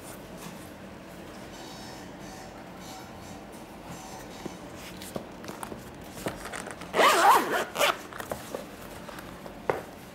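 Zipper of a Beats Executive headphone hard-shell carrying case pulled open in one loud run lasting about a second, starting about seven seconds in. Light handling clicks and taps on the case come before and after it.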